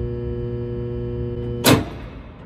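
Steady electrical hum with a buzzing stack of overtones from the high-voltage supply charging a Marx bank. Near the end a sudden short, loud burst of noise cuts in, after which the hum drops away.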